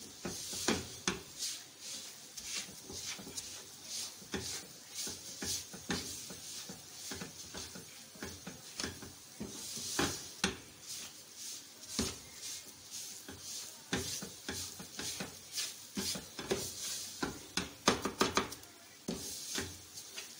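A spatula scraping and stirring a thick coconut-and-sugar laddoo mixture around a nonstick frying pan, in irregular strokes a few times a second, the loudest scrapes near the end. The mixture is being cooked down until it draws together and leaves the pan clean.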